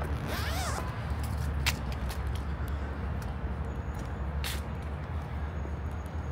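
Outdoor city ambience: a steady low rumble of distant traffic. A brief squeaky warble comes in the first second, and two sharp clicks come a few seconds apart.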